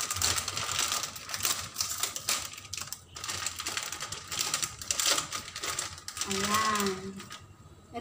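Plastic instant-ramen packet crinkling and rustling in quick, irregular crackles as it is torn open and handled, stopping shortly before the end. A brief voiced sound comes near the end.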